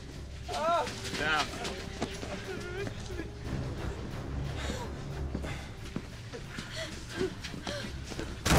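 Frightened wordless whimpering and gasping from several people, strongest in the first second and a half, then scattered and quieter, over a low steady drone.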